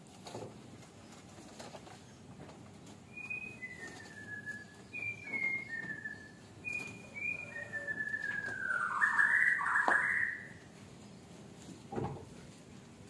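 A series of short whistled notes, each pair a brief high note followed by a falling one, repeated several times. It ends in a longer, louder falling whistle near the end.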